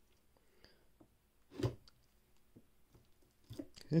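Kitchen knife cutting through capped beeswax honeycomb in a wooden frame: faint squishing and crackling of wax, with one brief louder sound about one and a half seconds in.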